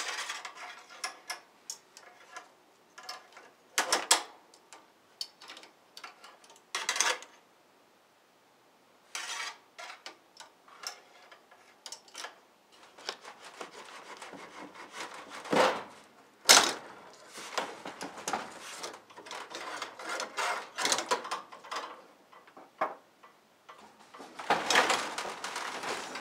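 Wire coat hanger pushed through the wedged-open top gap of a closed sectional garage door, scraping and tapping against the door and wooden header as it fishes for the opener's emergency release. Irregular clicks and rubs, with sharp knocks about four seconds in and again past the middle, and a denser rattling run near the end.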